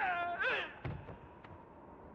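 A short, high-pitched yelping cry from a person, followed just under a second in by a single sharp hit.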